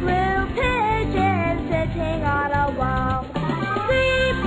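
Children's song: singing over an instrumental backing.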